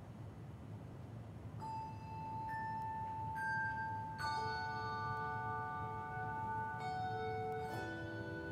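Handbell choir playing a slow passage: after a short pause, single bells ring out one after another, then fuller chords strike about four seconds in and again near the end, each note ringing on for several seconds.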